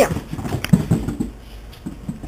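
Chinese Crested dog in dog boots scrambling about on a carpeted floor in play: a quick, irregular run of soft thumps and scuffs that eases off after about a second and a half.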